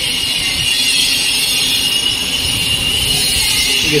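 Walk-behind floor grinding machine running steadily on a stone floor: a constant high whine over a rushing hiss.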